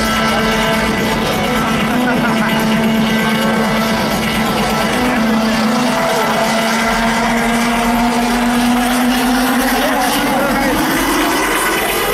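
Electronic dance music over a festival PA: a held synth drone that, over the last two seconds, sweeps steadily upward in pitch, a build-up riser, heard over the noise of a large crowd.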